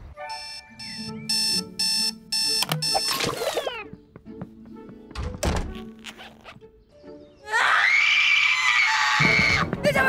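A bedside alarm clock beeping in quick repeated bursts for about the first three seconds, in a cartoon soundtrack. A thunk comes about five and a half seconds in, and a loud rushing sound with a steady high tone follows near the end.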